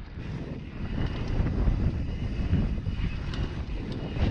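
Wind buffeting the rider's camera microphone while a mountain bike rolls fast down a dirt trail, with tyre rumble and the bike's scattered rattling clicks over the bumps.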